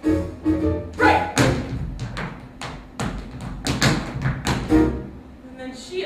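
Show-tune band accompaniment for a dance break, playing a repeated chord about twice a second. From about a second in to about five seconds, a run of sharp, irregular strikes from the dancer's shoes hitting the stage floor cuts through the music, then the steady chord pattern comes back.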